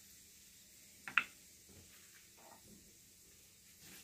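Faint room tone with one short, sharp click about a second in.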